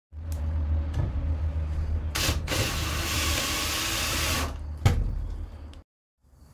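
Cordless drill driving a screw through the steel rack's pre-drilled hole into the plywood trailer wall: the motor runs steadily for nearly six seconds, with a louder, rougher stretch in the middle as the screw bites into the wood and a sharp click near the end before it stops.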